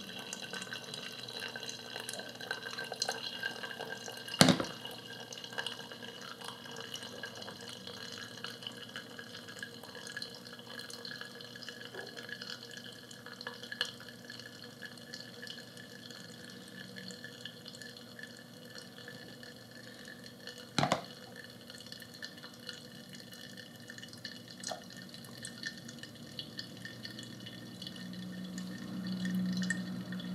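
Hot water poured in a thin stream from a gooseneck kettle onto coffee grounds in a ceramic pour-over dripper, then brewed coffee dripping and trickling into the glass server below. Two sharp knocks stand out, one a few seconds in and one about two-thirds of the way through.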